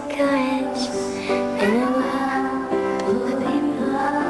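A woman singing a slow song with instrumental accompaniment, her voice gliding between held notes.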